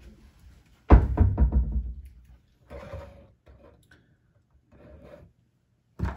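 A loud knock about a second in, dying away over about a second, then a few softer scrapes and rattles: handling noise as the turntable's power cord is plugged into the wall outlet.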